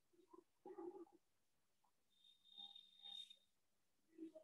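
Near silence, with a few faint brief sounds and a faint steady high tone for about a second midway.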